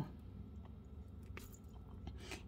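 Faint handling sounds of nylon monofilament thread being pulled through seed beads on a needle, with a few soft clicks, one sharper about a second and a half in, over a low steady hum.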